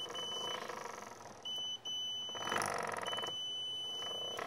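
The project's buzzer sounds a steady high-pitched beep in several stretches of half a second to over a second, as an ultrasonic distance sensor detects an object close to it. A brief rattling noise comes near the middle.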